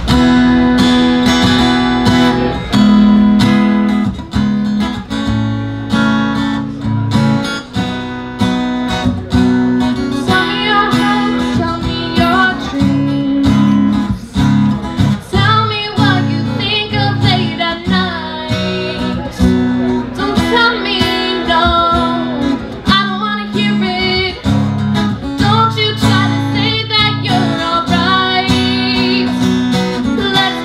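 Acoustic guitar strummed, opening a song, with a woman's singing voice joining about ten seconds in.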